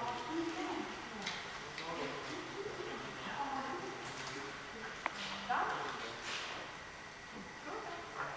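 Indistinct voices talking in a large hall, with one sharp click about five seconds in.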